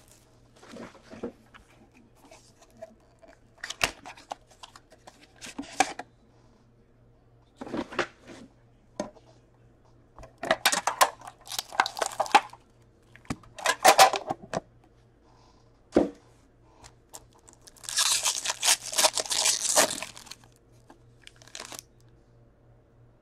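Plastic shrink-wrap and a foil trading-card pack being torn and crinkled by hand, in short bursts with pauses between them. The longest and loudest burst, near the end, is the foil pack being ripped open.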